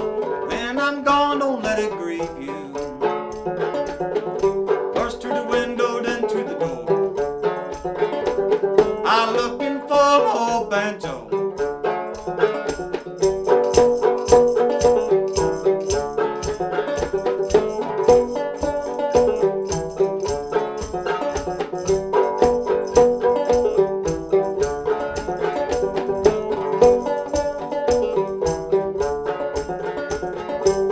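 An 1840s William E. Boucher fretless minstrel banjo, tuned low to about eAEG♯B, played clawhammer style: a steady, quick rhythm of plucked and brushed notes in an instrumental passage of an old-time tune.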